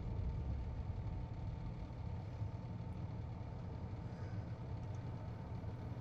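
Low, steady rumble of a car engine heard from inside the car's cabin.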